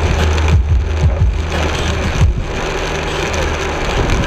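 A car driving on a rain-soaked highway, heard from inside the cabin: steady tyre hiss on the wet road over a low engine and road hum, with a few short low thumps.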